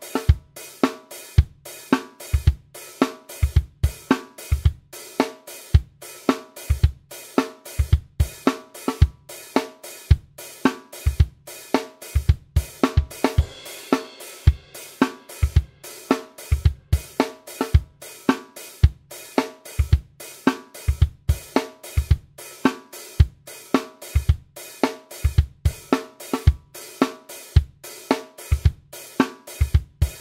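Programmed disco-funk drum loop at 110 bpm on a sampled drum kit: kick, snare, hi-hat and cymbals repeating a steady groove.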